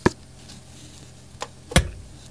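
A few sharp taps or knocks from close handling of yarn and a crocheted piece: one right at the start and two close together near the end, the last the loudest.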